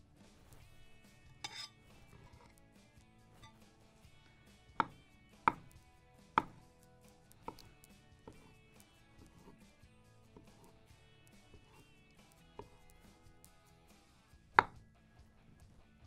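Kitchen knife slicing bananas on a wooden cutting board: a handful of short, sharp knocks of the blade meeting the board, spaced irregularly, the loudest near the end.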